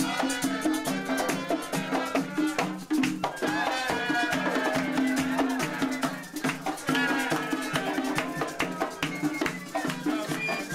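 Live plena-style parranda music: panderetas (hand-held frame drums) and other hand percussion play a fast, steady beat, with a melody line coming in about three seconds in.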